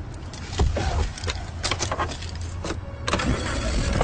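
A vehicle engine running low and steady, with a string of sharp clicks and knocks over it.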